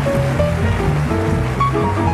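Live jazz piano trio: acoustic grand piano playing a run of single melody notes over two double basses walking a steady line of plucked low notes.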